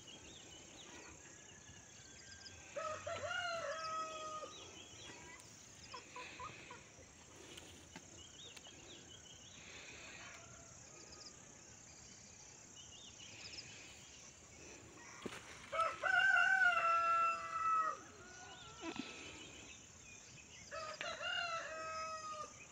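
A rooster crowing three times, each a drawn-out pitched call; the second crow, past the middle, is the loudest.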